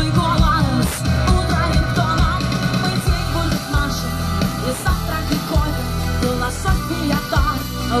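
Live rock band playing, with electric guitar, acoustic guitar and drums, recorded from the crowd on a phone.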